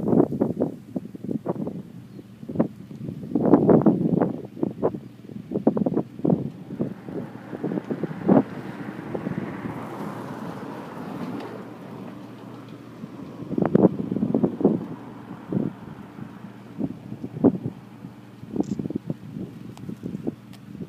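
Wind buffeting a handheld camera's microphone in irregular, rumbling gusts, heaviest about four seconds in and again around fourteen seconds.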